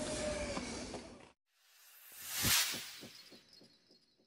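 A whoosh sound effect that swells to a hit about two and a half seconds in, then trails off in fading echoing repeats: a title-card logo sting. Before it, about a second of outdoor background that cuts off abruptly.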